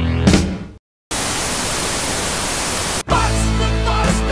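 Electronic music dies away into a moment of silence, then an even burst of TV-style static hiss runs for about two seconds and cuts off suddenly as a rock band track kicks in with bass and guitar.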